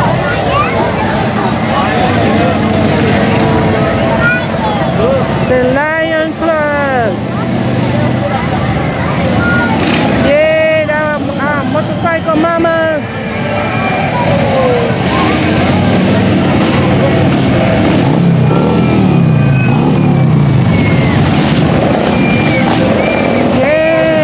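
Parade street noise: crowd chatter over motorcycle engines running as they pass, with short rising-and-falling whoops about 6 and 11 seconds in.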